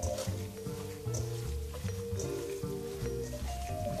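Background music of held, steady notes, with faint squelching of ground beef being kneaded by hand in a steel bowl.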